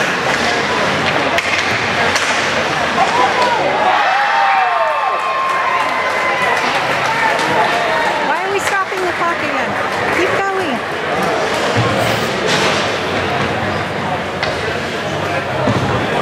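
Ice hockey game heard from the stands: spectators talking and calling out over the rink's noise, with scattered sharp knocks of sticks, puck and players against the boards.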